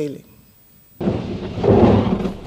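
A TV programme's transition sound effect, part of its jingle, that starts abruptly about a second in as a loud, dense rumble with most of its weight low.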